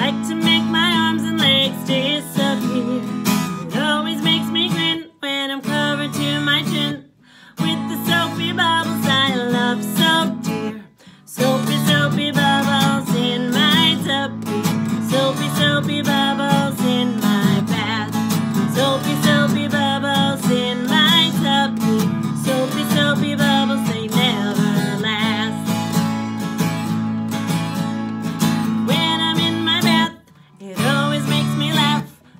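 A woman singing a children's song while strumming an acoustic guitar. The sound drops out briefly three times in the first half.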